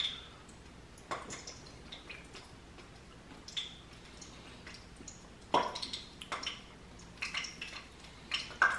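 Faint wet smacks and clicks of a mouth chewing a juicy chunk of dragon fruit, a few at a time with quiet gaps between.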